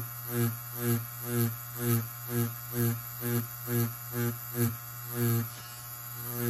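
Tattoo machine buzzing steadily while whip shading. The buzz swells and fades about twice a second, once for each whip stroke of the needle.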